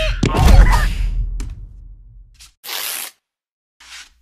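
Two cartoon larva characters screaming in wavering, gliding cries as they are flung into the air, over a low rumble. The cries fade out by about two seconds in, and a short swish follows.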